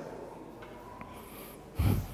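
A man's short, loud snort through the nose near the end, with a cloth held to his face; otherwise quiet room tone.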